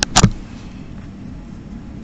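Two sharp clicks or taps at the very start, a fraction of a second apart, then a steady low room hum.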